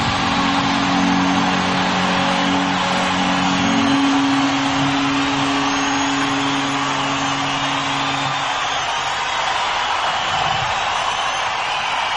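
A rock band's closing chord of electric guitars and bass ringing out and fading about eight or nine seconds in, over a large stadium crowd's steady cheering.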